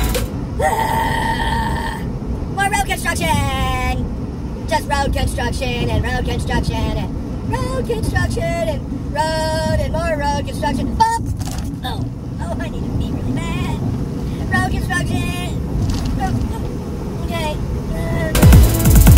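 A person's voice making wordless vocal sounds, with one long swooping call a few seconds in, over the steady low rumble of a semi truck's cab at highway speed.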